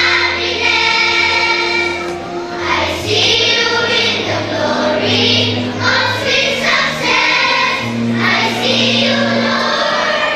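Children's choir singing together, phrases changing every second or two over sustained low accompaniment notes that shift every few seconds.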